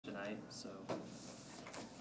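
Faint speech in a small room, with one sharp click a little before a second in.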